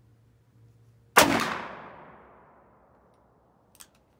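A single shot from a Ruger Super Redhawk .44 Magnum revolver, firing a handload, about a second in. It has a long echoing tail that fades over a second and a half. A couple of faint clicks follow near the end.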